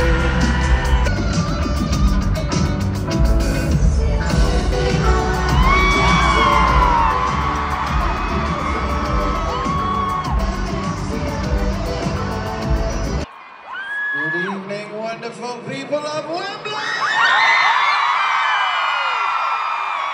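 A live band playing loudly in a stadium, with a crowd of fans screaming over it. The music cuts off suddenly about two thirds in, leaving the crowd screaming and cheering in many high, rising and falling voices.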